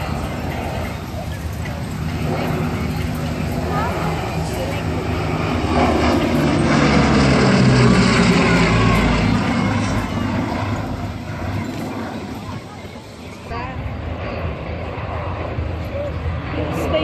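Bristol Blenheim's twin Bristol Mercury radial engines on a display pass. The sound builds to its loudest about halfway through, the engine note drops in pitch as the aircraft goes by, and it fades towards the end.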